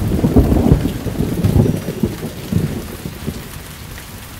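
A roll of thunder over heavy rain. The low rumble rolls on in waves and fades by about three seconds in, leaving the steady hiss of rain.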